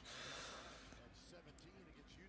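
Near silence, with a faint broadcast of the basketball game playing low underneath.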